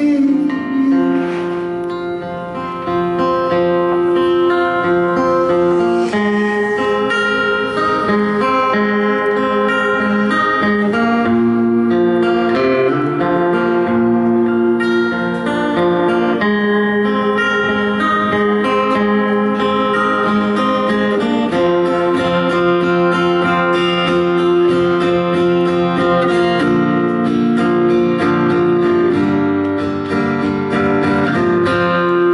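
Acoustic guitar strummed through an instrumental break in a slow song, with long held notes ringing over the chords, which change about every five seconds.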